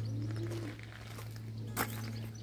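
A pigeon cooing once, a low rising-and-falling call, over a steady low hum. A sharp knock comes near the end.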